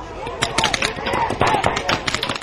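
Paintball markers firing rapid strings of shots, with voices shouting over them.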